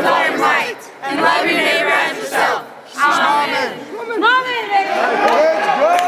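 A group of young people shouting together in loud bursts, then whooping and yelling with voices gliding up and down.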